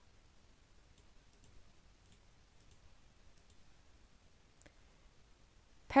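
Several faint, sharp computer mouse clicks, spread irregularly over a few seconds against quiet room tone.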